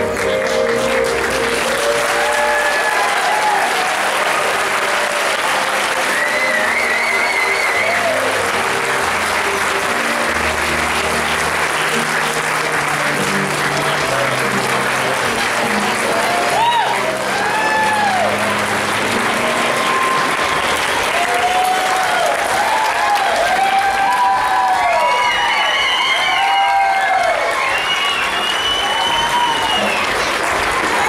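Audience applauding throughout, with rising-and-falling whoops and cheers that come thicker in the second half, over a music track with a steady bass line.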